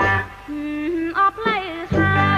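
A Cambodian pop song's band drops out and a woman's voice sings a short phrase alone, holding a note, then sliding up into a high, wavering turn and back down. The full band comes back in at the end.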